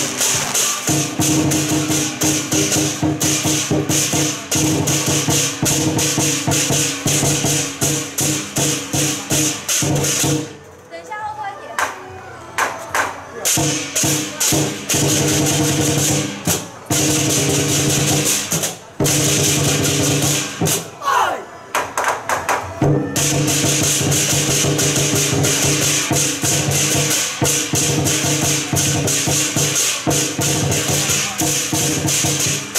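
Lion dance percussion: a large drum beaten rapidly with hand cymbals clashing and ringing over it. The playing drops to a brief lull about ten seconds in, then picks up again at full strength.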